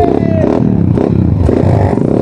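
Off-road motorcycle engine running through a rocky river crossing, its pitch falling in the first half second and then settling into a rough, uneven note.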